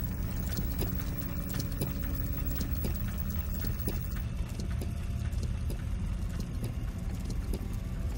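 Film sound design: a deep, steady rumble with scattered faint clicks and ticks over it.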